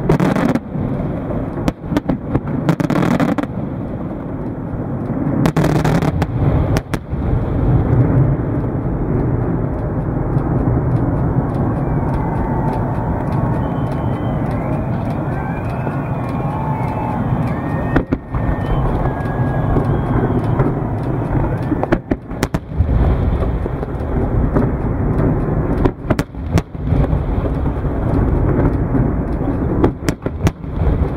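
Aerial fireworks shells going off in a display: repeated sharp bangs over a continuous low rumble of distant bursts.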